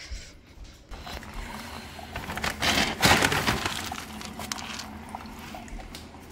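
Dry pet kibble rattling into a pet-food bowl. It builds about a second in, is loudest around three seconds in, then tails off.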